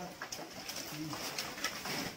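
Light knocks and rustling as dry sticks and a sack are shifted on a woodpile, with a brief low call about a second in.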